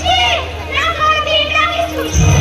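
A woman's high-pitched voice delivering stage dialogue through overhead microphones and a PA system, over a steady low hum.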